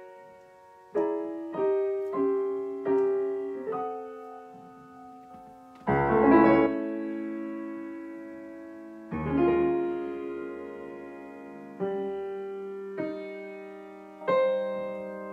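Grand piano played solo: a slow passage of separate chords, each left to ring and fade before the next. The fullest and loudest chord, reaching deep into the bass, comes about six seconds in.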